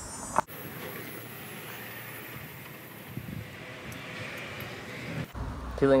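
Steady, even outdoor background noise with no distinct event, starting abruptly about half a second in at a splice and breaking off abruptly near the end, where a man starts speaking.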